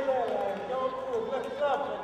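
A high-pitched voice in sing-song tones, its pitch sliding up and down.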